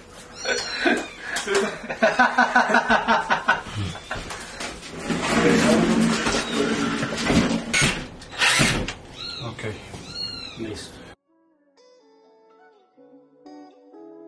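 Talking and laughter with a few short, high, rising-and-falling squeals. These cut off abruptly about eleven seconds in, and quiet background music of soft, sustained melodic notes follows.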